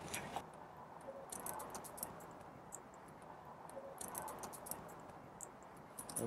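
Faint, scattered ticks and crackles, in two short clusters, as a hive tool pries apart the two wooden boxes of a stingless bee hive and the sticky wax-and-resin seal between them gives way.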